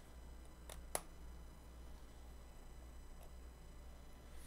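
Faint room tone with a low steady hum, and two small sharp clicks close together about a second in: a small screwdriver on the screws that hold the removable solid-state drive in a 2017 13-inch MacBook Pro.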